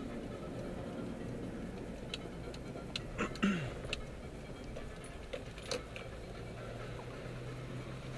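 Car cabin noise while driving: a steady low engine and road hum, with a few scattered clicks and light rattles around the middle.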